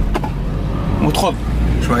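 VW Golf IV engine running at raised revs of about 2000 rpm, heard from inside the cabin as a steady low drone that grows stronger about a second and a half in. The revs sit higher than they should: the engine is running too fast.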